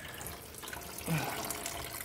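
Engine coolant draining out of a Ford Mustang's radiator into a drain pan under the car: a steady run of liquid.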